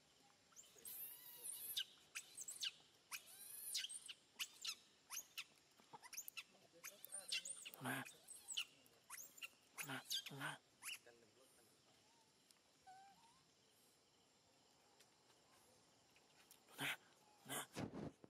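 Baby macaque screaming in a rapid series of short, high-pitched distress cries through the first eleven seconds, then quiet, with two more cries near the end.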